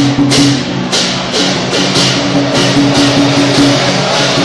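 Dragon-dance percussion playing loudly: drums and repeated cymbal clashes, two or three a second, over a steady ringing pitched tone.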